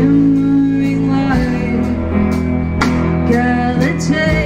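A live rock band playing: electric guitars, bass guitar and a drum kit, with a woman singing lead.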